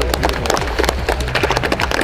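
A small group of people clapping their hands: a fast, irregular run of sharp claps.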